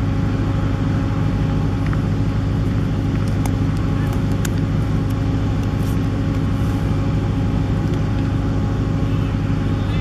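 A steady mechanical hum made of several held low tones, running evenly throughout, with a few faint clicks in the first half.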